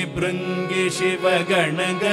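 Carnatic vocal duet: two male voices singing a kriti with gliding, ornamented phrases, accompanied by violin and a few light mridangam strokes.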